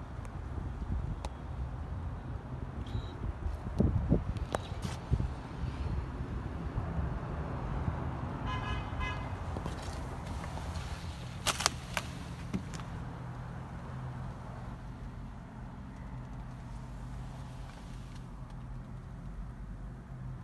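A steady low hum inside a parked car's cabin. A few knocks and clicks come about four seconds in and again near twelve seconds, and a short, evenly repeating tone sounds about halfway through.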